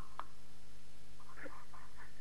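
Steady low hum and hiss of a telephone call line in a pause between a caller's words, with a faint click just after the start and a faint murmur of voice near the end.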